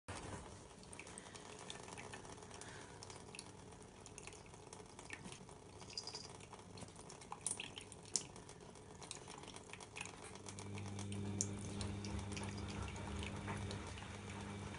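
A thin stream of tap water running into a stainless steel sink, with scattered small splashes and ticks as a cat paws at the stream. A low steady hum comes in about ten seconds in.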